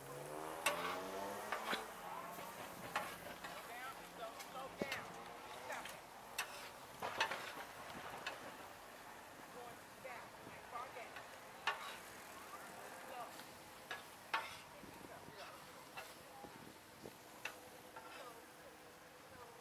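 Faint background voices with irregular sharp clicks and taps scattered throughout.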